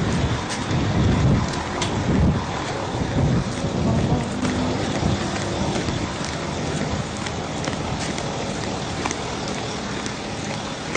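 Wind rumbling and buffeting on the camera's microphone, mixed with handling noise as the camera is carried. The gusts are heaviest in the first half and settle into a steadier rush later.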